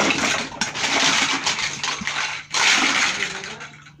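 A tower of large plastic building blocks toppling and spilling onto the floor: a dense clatter of many bricks in two waves, with a brief pause about two and a half seconds in, fading toward the end.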